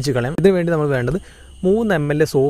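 A man narrating in Malayalam, with a short pause in the middle, over a faint steady high-pitched tone.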